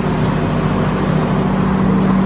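Steady outdoor background noise with a low, even hum underneath and no distinct events: wind or traffic-like ambience.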